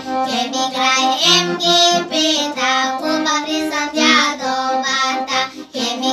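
A children's folk group of young girls singing a Bulgarian folk song over instrumental accompaniment.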